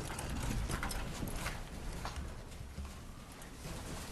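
Irregular knocks, clicks and shuffling from people getting up from chairs at a meeting dais and moving past the desk microphones. The knocks are densest in the first second and a half, over a low rumble.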